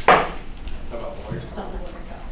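A single sharp clunk right at the start, like a hard object knocked or set down close by, followed by faint talk in the room.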